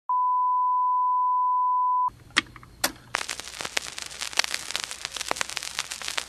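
Steady 1 kHz test-tone beep, a single pure tone held for about two seconds and cutting off abruptly. It is followed by faint crackle with scattered sharp clicks.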